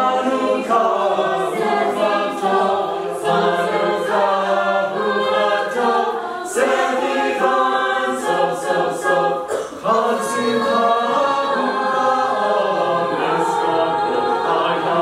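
Mixed-voice a cappella group singing a Hanukkah medley in close harmony, several voice parts moving together with no instruments.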